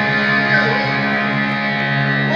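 Amplified electric guitar holding a steady, sustained chord through a stadium PA.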